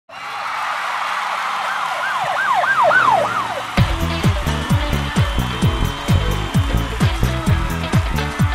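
Channel intro jingle: a swelling whoosh with quick up-and-down pitch glides, then a steady kick-drum beat with fast ticking hi-hats that kicks in about four seconds in.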